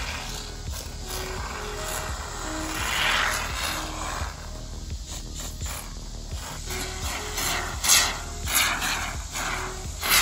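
Background music playing a simple melody of short notes, over hissing and sputtering from a can of expanding polyurethane spray foam being dispensed through its straw, loudest around three seconds in and again near the end.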